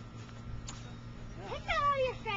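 Quiet outdoor background with a faint steady low hum and one faint click. Near the end comes a person's voice with a falling pitch.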